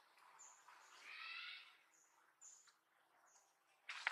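Faint outdoor sounds: a short animal call of several stacked tones about a second in, over short high chirps that repeat every half-second or so, and a sharp click at the very end.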